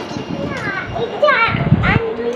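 A young child's and a woman's voices, high-pitched with sliding, squealing pitch and no clear words, as the child climbs onto the woman's lap. A dull thump near the end.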